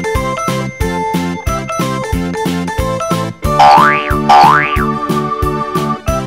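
Upbeat children's background music with a steady beat. About three and a half seconds in, two quick glides, each rising then falling in pitch, play one after the other; they are the loudest sounds.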